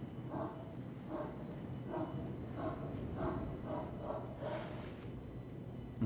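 A dog barking repeatedly, about twice a second, over a low steady hum.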